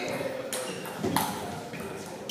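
Table tennis ball being struck and bouncing during a rally: two sharp pings, each with a short ring, about two-thirds of a second apart.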